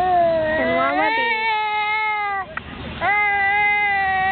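Baby crying in two long, drawn-out wails. The first lasts about two and a half seconds and the second begins about three seconds in.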